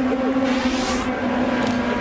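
An IndyCar's Honda V8 engine running at a steady, moderate pitch under caution, heard through the broadcast's track microphones. There is a rush of noise, like a car going by, around the middle.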